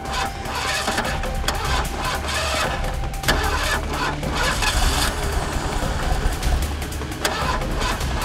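A car engine starting and running, with background music.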